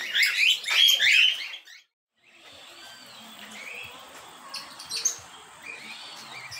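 A flock of lovebirds (Agapornis) chattering with loud, shrill, overlapping calls for about the first two seconds. Then a sudden cut to much quieter open air with faint, scattered bird chirps.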